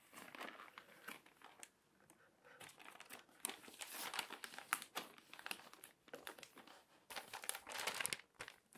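Glossy magazine and crinkly paper being handled and shuffled, rustling and crinkling unevenly. Quieter for a moment, then louder from about three seconds in.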